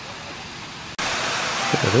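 A steady background hiss, then about halfway through an abrupt cut to the louder steady rush of a waterfall spilling from a rock cliff. A man's voice starts near the end.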